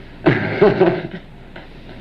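A brief laugh, one short outburst early on and a small sound near the end.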